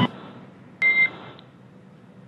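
A single short electronic beep about a second in, a steady tone lasting about a quarter second, over faint hiss. It is a radio communications tone on the mission audio loop, just before a radio call.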